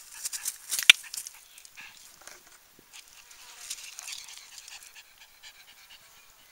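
A small dog panting close by, in quick short breaths, with a single sharp click about a second in.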